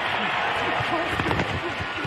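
Football stadium crowd noise: a steady din of many voices, with a few faint shouts.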